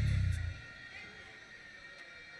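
Live band music with a heavy bass line that stops abruptly about half a second in, leaving a quiet lull of faint background noise.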